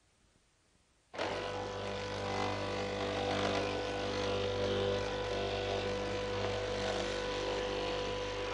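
Electric straight-knife cloth-cutting machine running steadily, its motor giving a constant hum with a noisy mechanical whirr, coming in abruptly about a second in after near silence.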